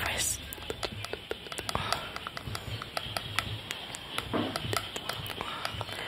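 Makeup brush and gloved fingers working right at a microphone, giving a run of soft, irregular clicks and taps.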